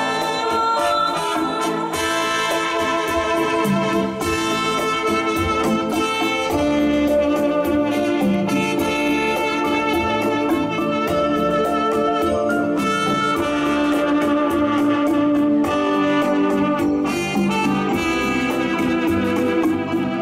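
Electronic keyboard playing an instrumental interlude of a slow Vietnamese ballad: a lead melody of long held notes over a steady drum-and-bass backing rhythm.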